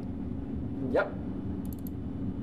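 Steady low hum of running lab equipment, with a few faint quick ticks near the end.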